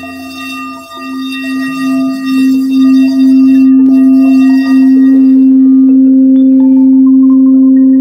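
Frosted quartz crystal singing bowl played by rubbing a wand around its rim: one steady tone with faint overtones swells over the first three seconds and then holds loud and even.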